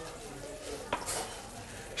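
Quiet kitchen handling noise of utensils and dishes, with one light click just under a second in.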